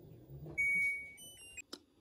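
LG front-load washer-dryer sounding its electronic beep: one held tone about half a second in, then a quick run of short higher notes. Before it the machine is running with a quiet low hum, and a sharp click comes near the end.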